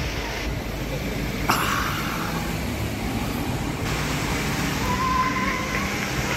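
Outdoor city background: steady traffic noise with a low rumble. A sharp click comes about a second and a half in, and a short steady high tone near the end.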